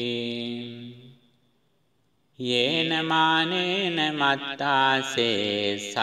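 A voice chanting Theravada Buddhist scripture in Pali: a held note fades out about a second in, and after a pause of about a second the recitation resumes.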